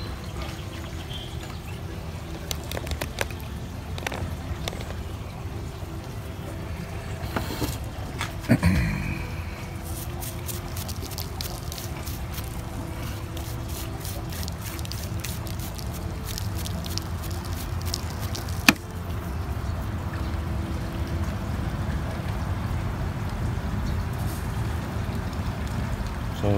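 Light scratching and clicking of a toothbrush scrubbing soil from the roots of a bare-root caudex, over a steady low hum. A thump comes about a third of the way in, and a single sharp click a little past two-thirds.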